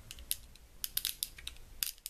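Plastic fidget cube's three rolling dials being turned by hand, giving a run of small, irregular clicks.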